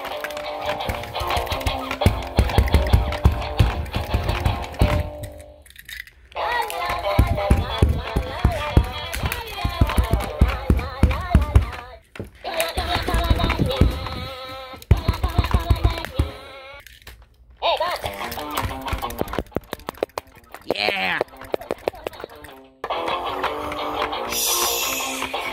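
Electronic toy guitar playing short recorded rock clips over a drum beat, each cut off after about five seconds with a brief break before the next, four breaks in all.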